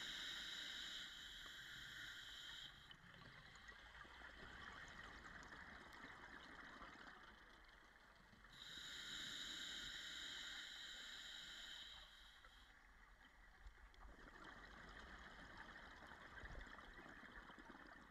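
A scuba diver's regulator through slow breaths underwater: a hissing inhalation through the demand valve for the first few seconds, then exhaled bubbles gurgling, then a second inhalation about eight and a half seconds in, followed by more bubbling exhalation.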